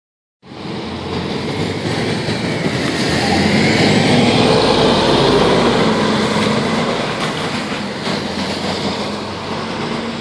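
A 1998 Nova Bus RTS city bus's diesel engine pulls away and accelerates with a rising whine. It grows loudest about halfway through, then fades as the bus drives off.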